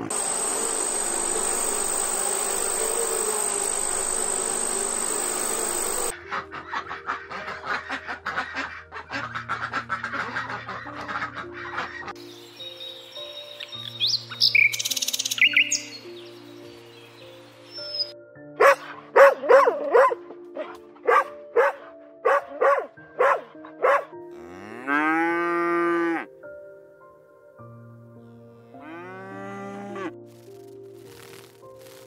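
Animal calls over soft background music: a noisy stretch at first, then a quick run of short repeated calls and one longer call that rises in pitch.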